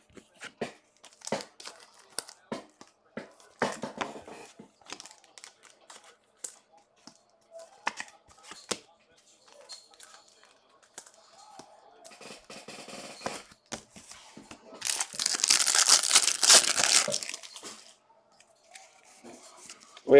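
Foil wrapper of a trading-card pack being handled and torn open. Scattered light crinkles and taps come first, then a loud tearing rip of a few seconds about three-quarters of the way through.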